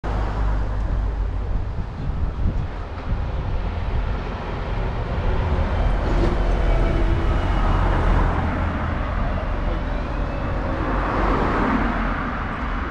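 Street traffic heard from the kerb: a diesel open-top double-decker bus draws past about halfway through, with a faint high whine over its rumble, and a car passes near the end.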